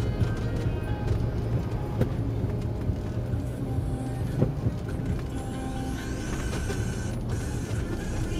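Inside a car moving slowly in traffic: a steady low engine and road rumble with music playing over it, and a couple of sharp clicks about two and four and a half seconds in.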